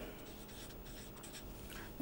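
Faint strokes of a felt-tip marker on paper as a short word is written out by hand.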